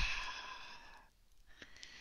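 A woman's slow, audible exhale into a close headset microphone, a guided out-breath that fades away about a second in.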